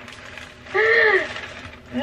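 A woman's single short vocal exclamation about a second in, one drawn-out 'oh' that rises and then falls in pitch, a half-laughing reaction of dismay at a wrongly ordered item.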